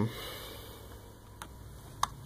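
A pause in speech: faint room noise with a soft breath just after a trailing "um", and one faint click about one and a half seconds in.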